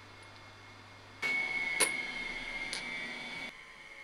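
Two light clicks of machined stainless steel tri-clamp ferrules being set down on a cloth-lined tray, heard over a low hum that gives way about a second in to a steady hiss with a faint high whine.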